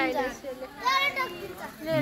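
Children's high-pitched voices talking and calling out in short phrases.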